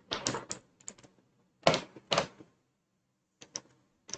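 Computer keyboard keys pressed in scattered clacks: a few quick ones at the start, two louder ones about two seconds in, and a short cluster near the end.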